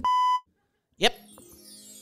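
A short steady electronic bleep tone, the censor beep laid over speech in an edited podcast, lasting under half a second. About a second in, an added music sound effect starts, with a falling shimmer of high tones over a held chord.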